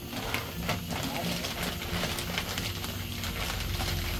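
Plastic dog-food sack crinkling and rustling as its opened top is folded over to close it, in small scattered clicks.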